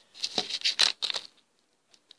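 A plastic candy-bar wrapper crinkling in the hand in a quick run of short crackles as a fridge-cold Snickers bar is pulled in half, falling quiet about a second and a half in.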